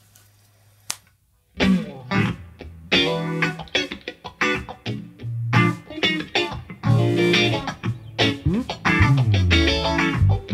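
After a brief low hum and a click, a guitar, bass and drums band starts playing about one and a half seconds in: electric guitar through a modulation effect over bass guitar and drum kit.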